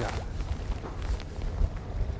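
Steady rushing noise of wind and choppy sea on the deck of a drifting fishing boat, with a low rumble underneath.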